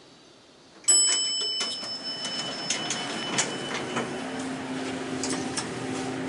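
Elevator arrival chime: one ding about a second in that rings on and fades over a couple of seconds. Then the elevator doors slide open with clicks and rattles, and a steady low hum from the car starts partway through.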